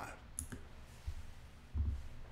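The tail of a man's last word, then a faint sharp click about half a second in and soft low thumps near one second and near the end.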